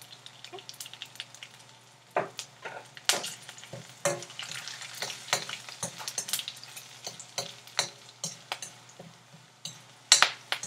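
Tempering spices (chana dal, urad dal, mustard seeds, cumin seeds and green chillies) frying in hot oil in a steel pan: a steady sizzle with frequent sharp pops and crackles as the seeds splutter, the pops coming thicker from about two seconds in.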